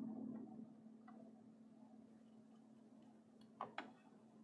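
Near silence with a faint steady hum, broken near the end by two soft computer-mouse clicks in quick succession.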